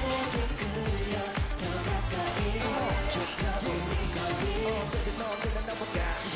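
K-pop song performed on stage: male group vocals over a pop dance track with a steady beat.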